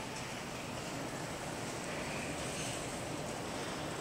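Steady, even background hiss of a large hotel atrium's ambience, with no distinct event standing out.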